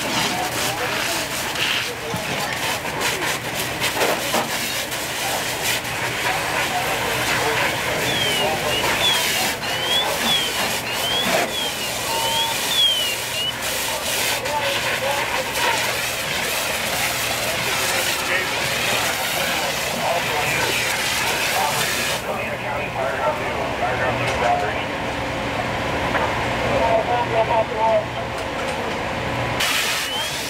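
Fireground noise: diesel fire apparatus running with a steady low hum, hose streams spraying water, and voices in the background. A repeated chirping electronic tone sounds for a few seconds in the middle.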